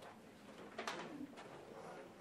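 Faint room sounds in a small room: a short sharp click a little under a second in, followed by a brief low hum.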